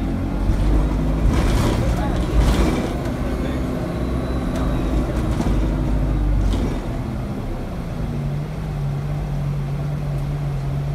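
Bus engine and drivetrain heard from inside the passenger saloon: a steady low rumble with engine notes that shift in pitch. There are a few rattles and knocks between about one and three seconds in, and the engine settles to a steadier, lower note from about eight seconds in.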